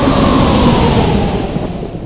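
Trailer sound design: a loud, dense rumble with hiss that grows steadily duller and fades in the last half second.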